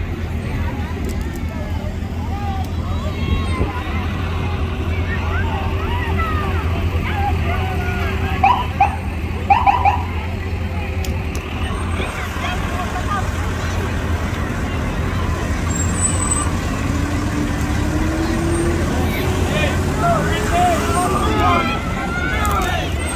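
Slow-moving parade vehicles with a steady low engine rumble, under crowd chatter and short shouts; near the end a fire engine's engine note rises in pitch as it goes by.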